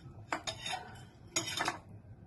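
Eating utensils clinking and scraping against a bowl of instant noodles, in two short bouts, the second a little past halfway and the longer of the two.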